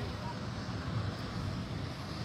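Wind buffeting the microphone outdoors: a steady, uneven low rumble.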